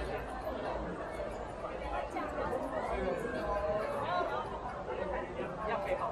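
Crowd chatter: several people talking at once in the background, no single voice clear enough to make out.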